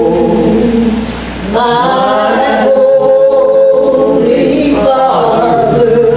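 Two women singing a gospel song together, phrases of long held notes with a short break between phrases about a second in and again near the end.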